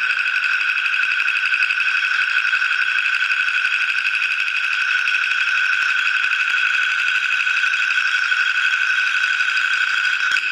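Contemporary chamber ensemble holding one loud, high chord without change, with a fast, rough flutter running through it and nothing low beneath it.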